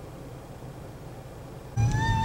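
Steady low rumble inside a car. Near the end a much louder held flute-like note of music suddenly starts.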